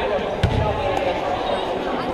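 A basketball bouncing once on the hardwood gym floor about half a second in, over a steady murmur of voices.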